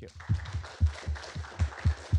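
Audience applause, with one pair of hands clapping loudly close to the microphone at about four claps a second.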